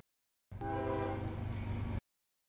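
CSX freight locomotive horn sounding a multi-note chord for the grade crossing, starting abruptly about half a second in and lasting a little under a second, over the low rumble of the approaching train.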